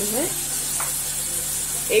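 Chopped onion and tomato frying in hot oil, with a steady sizzle.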